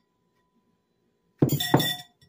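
Glass mixing bowl set down on a granite countertop about a second and a half in: two sharp clinks with a short glassy ring.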